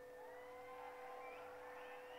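Near silence in a pause of the speech, with a faint steady hum.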